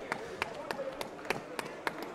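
A regular run of sharp taps, about three a second, with faint voices behind them.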